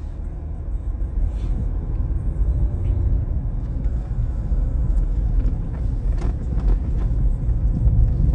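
Steady low rumble of road and engine noise inside a car's cabin as it drives.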